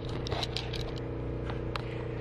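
A few small clicks and scrapes of a spoon on a toddler's plastic plate, over a steady background hum.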